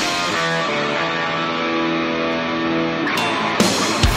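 Distorted Dean electric guitar letting a held chord and sustained notes ring out, with no drums under it. About three and a half seconds in, the drums and the full heavy-metal riff come back in.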